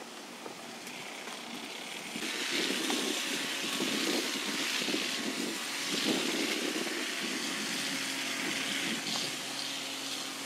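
Noise of a passing motor vehicle, swelling about two seconds in, holding steady through the middle and easing slightly near the end.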